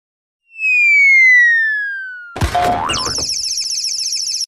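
Cartoon sound effects: a whistle falling steadily in pitch for about two seconds, then a sudden crash with a short boing, followed by a fast, high-pitched twinkling warble.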